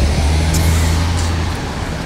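Street traffic: a motor vehicle's engine gives a loud, steady low hum that fades about one and a half seconds in.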